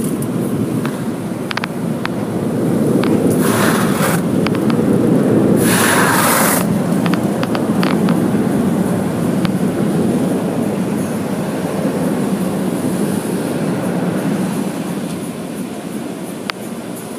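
Automatic car wash heard from inside the car: a loud, steady rumbling wash over the body. Two short hissing bursts come about three and six seconds in, with scattered clicks throughout.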